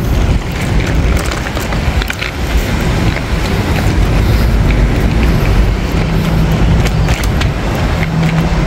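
Road traffic: passing cars and running engines, a continuous low rumble with a steady low hum at times.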